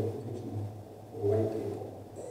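A pause in muffled speech: one short vocal sound about a second and a half in, over a low steady hum.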